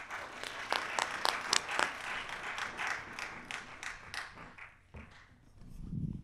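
Audience applauding, the clapping dying away about five seconds in.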